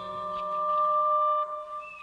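An accordion holding one steady reedy note, level in pitch, released about a second and a half in.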